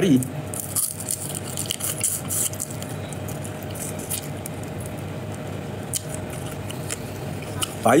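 Close-up eating sounds of a man chewing crispy fried red tilapia taken with his fingers, with scattered small crackles and clicks.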